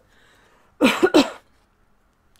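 A woman's short, husky laugh: two quick voiced bursts about a second in, her voice rough from a sore throat.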